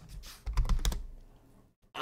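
A quick run of computer keyboard keystrokes in the first second as a ticker symbol is typed in, with a dull low thud under them about half a second in.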